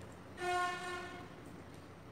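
A single steady horn-like tone, flat in pitch and a little under a second long, starting about half a second in, over faint room noise.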